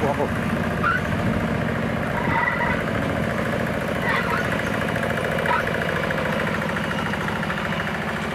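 Two-wheel hand tractor engine running steadily under load as it pulls a bladed tilling implement through wet paddy mud.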